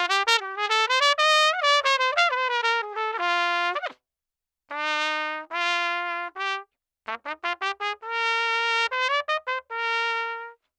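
Solo trumpet playing short test phrases, first on a Lotus 1XL2HC brass mouthpiece and later on a Bach Megatone 1C. It plays a run of quick, moving notes, then after a pause about four seconds in some longer held notes stepping upward, a burst of short tongued notes and one long held note near the end.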